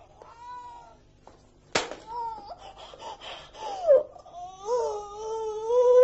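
A woman's drawn-out wailing cries, wavering in pitch, which grow into one long held moan in the second half: the cries of a badly wounded woman. There is a single sharp knock about two seconds in.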